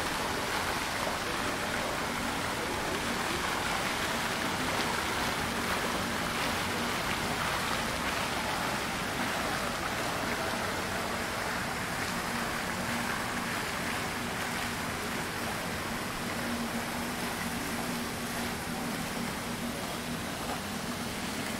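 Fountain water jets splashing steadily into a stone basin, with a faint low steady hum underneath.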